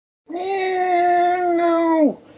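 A cat's single long, drawn-out meow, starting about a quarter second in, held at a steady pitch and dropping away at the end.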